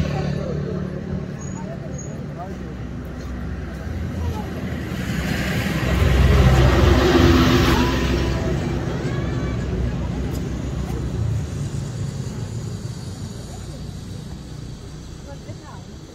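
Zipline trolley running along a steel cable with a rushing whir. It swells about five seconds in and fades slowly as the rider moves away.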